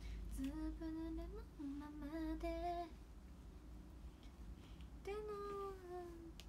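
A woman humming a melody softly in two phrases: the first made of several held notes, then a pause of about two seconds, then a second phrase starting near the end.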